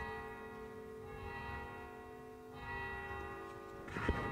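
Instrumental music: slow, sustained chords, changing about a second in and again near three seconds.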